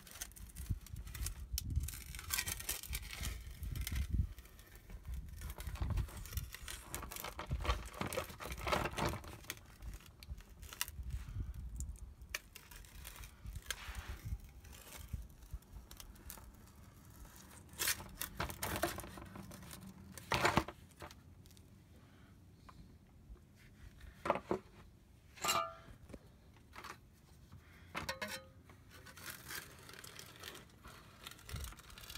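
Metal scraper blade being forced and worked between a rear differential cover and the axle housing to break the gasket seal: irregular scraping, prying clicks and knocks, with low thumps through the first dozen seconds and a short squeak past the three-quarter mark.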